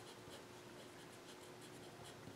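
Faint scratching of a pen writing on paper, a quick, irregular run of short strokes as a word is written out.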